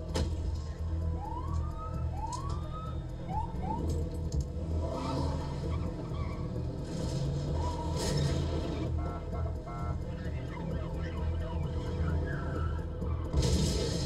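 Action-film soundtrack from a car scene: a steady low vehicle rumble, with four short rising siren whoops in the first few seconds and a few scattered knocks.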